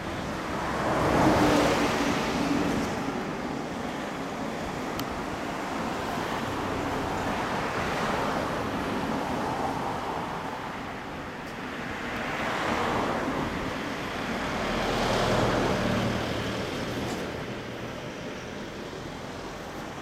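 Road traffic passing by: vehicles swell and fade several times over a steady background hum, the loudest about a second in and another around fifteen seconds.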